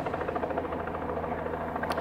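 Helicopter running steadily.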